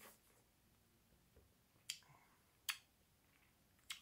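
Near silence broken by three short, faint mouth clicks, lip and tongue smacks from tasting a sip of whiskey, spaced about a second apart in the second half.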